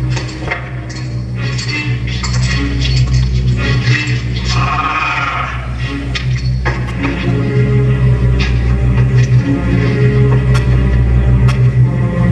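Film soundtrack music from an old western, held over a sustained low bass note, with scattered light clicks.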